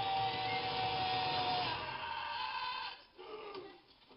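Film soundtrack through cinema speakers: a long held high note falling slightly in pitch over a dense, full mix. The mix cuts off about three seconds in, and a brief, quieter voice follows.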